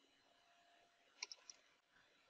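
Near silence with three faint computer-keyboard key clicks in quick succession about a second in.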